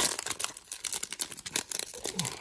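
Foil wrapper of a Topps Chrome baseball card pack being torn open and crinkled by hand, a dense run of irregular crackles and small rips.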